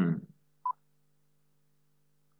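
A single short electronic beep about two-thirds of a second in, the tick of a quiz countdown timer, over a faint steady low hum. The tail of a spoken word ends just at the start.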